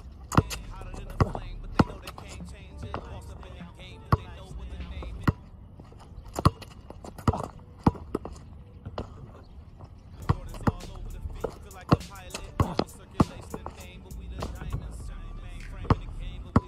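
Basketball dribbled hard on an outdoor asphalt court: sharp bounces at an uneven pace, coming in quicker runs in the second half, with music in the background.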